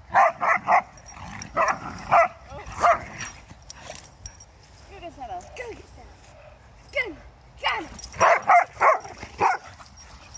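Two dogs barking in play, in quick runs of short barks: three near the start, a few more around two to three seconds in, and a run of about five near the end, with fainter whines between.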